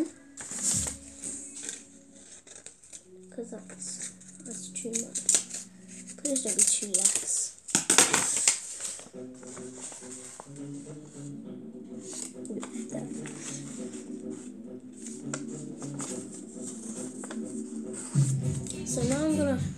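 Sheets of paper rustling and crinkling as they are handled, folded and creased by hand, in bursts that are loudest about halfway through. Music plays underneath, a melody of held notes that becomes more prominent in the second half.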